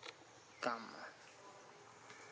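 A single short macaque call, falling in pitch, a little over half a second in, over a steady background of insects buzzing.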